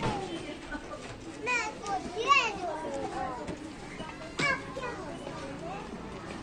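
Children's high-pitched voices calling out and squealing in several short bursts over general street bustle, with a single sharp click about four and a half seconds in.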